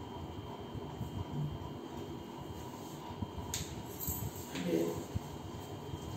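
Faint, low voices over a steady background hum, with two short sharp noises in the second half.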